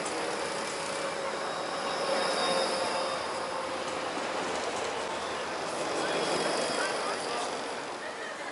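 Electric street tram rolling past close by on its track: a steady rush of wheels on rail under a faint electric motor hum. It swells twice as it goes by.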